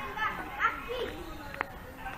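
Children's voices a little way off, talking and calling, with one short click about one and a half seconds in.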